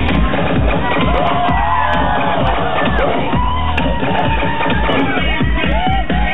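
Loud live electro mashup DJ set played over a festival PA, a steady kick-drum beat driving it, heard from within a crowd that is cheering and shouting.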